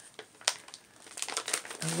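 Clear plastic wrapping crinkling as it is handled. There are a few sharp crackles at first, and from about halfway it becomes a busy run of crinkling.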